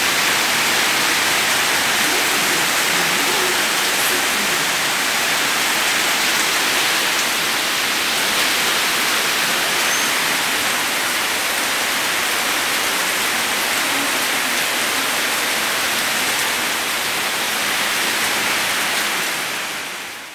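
A loud, steady rushing hiss that does not change; it cuts in and cuts off abruptly.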